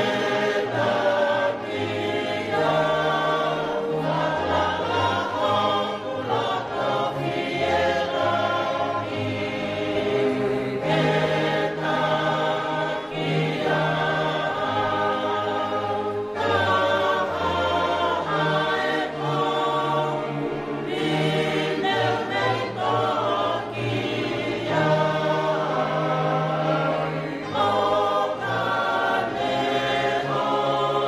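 A congregation singing a hymn in Tongan, many voices together in sustained phrases.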